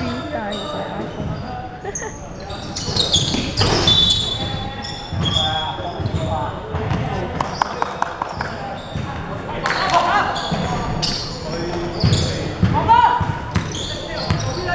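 Basketball bouncing on a hardwood court, with short sharp knocks scattered through, among players' calls. Everything echoes in a large sports hall.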